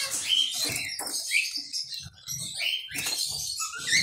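Small caged finches giving short squeaky chirps several times, with the light knocks and flutter of a bird hopping about the perch and wire cage.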